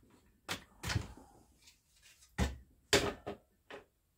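A handful of sharp plastic clacks and knocks, spaced irregularly, as the top cover is worked off an Echo CS-4910 chainsaw during its teardown.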